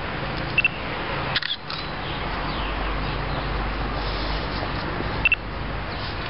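Camera shutters clicking a few times, sharp double clicks about half a second in, around a second and a half, and again near the end, over a steady outdoor background noise.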